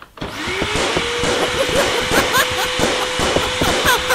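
A vacuum cleaner switches on: its motor whine climbs in pitch over the first second, then runs steady under a busy stream of crackles and squeaks as it sucks.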